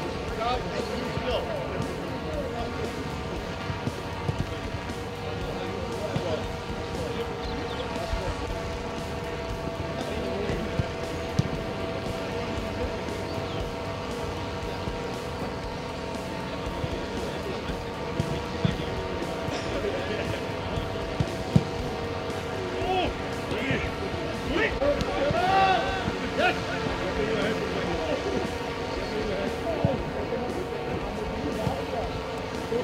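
Outdoor football training ambience: voices talking in the background over a steady hum, with a few sharp thuds of footballs being kicked, the clearest about a third and two-thirds of the way through.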